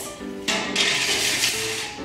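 A metal drying tray sliding onto the rails of an aluminium rack, a scrape that starts about half a second in and lasts well over a second, over background music.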